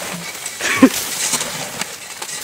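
Water pouring down onto a person with a steady hissing splash. A short vocal cry comes a little under a second in.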